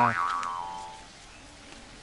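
Background music ends with a short springy up-and-down pitch glide at the very start, then fades out within the first second, leaving faint, steady outdoor ambience.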